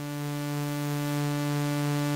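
Pioneer Toraiz AS-1 analog monophonic synthesizer playing a pad patch: one held note that swells in slowly over about the first second and then holds steady. Its low-pass filter cutoff is set near the top, so the note is bright, full of high overtones.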